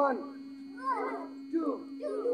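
Children's voices calling out in short, rising-and-falling shouts during a group exercise count, three calls in two seconds, over a steady low hum.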